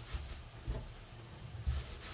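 Faint rubbing of a hand rolling a soapy wet wool cord back and forth on a terry-cloth towel during wet felting, with a couple of soft low thumps.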